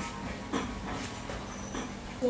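A man breathing hard with short voiced exhalations, a few in quick succession, as he works through two-pump burpees.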